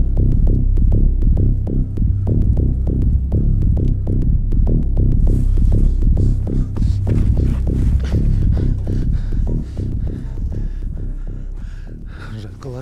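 Tense film score: a low, pulsing bass throb at about three beats a second, fading near the end.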